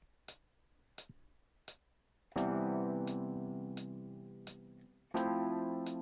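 Metronome clicks, one about every 0.7 s, with two sustained keyboard chords from a software keys instrument, the first starting a little over two seconds in and the second near the end, each fading slowly. The chords are a slow 1–4 progression with sevenths, recorded live against the metronome after a count-in.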